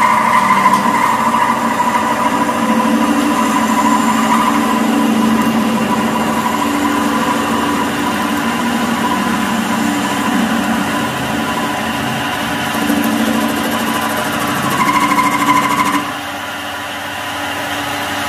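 Capstan lathe running with its spindle turning, a steady machine hum with several held tones, while a tool faces the end of a round bar held in the chuck. The sound drops a little in level about sixteen seconds in.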